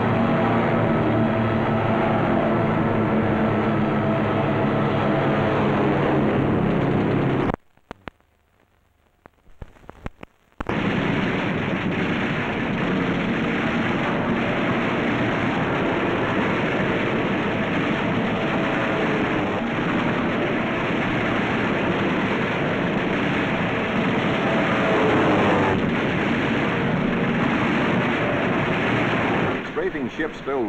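Battle sound effects of low-level strafing: a steady drone for about seven seconds, a sudden drop to near silence for about three seconds, then a continuous dense rumble of machine-gun fire and explosions.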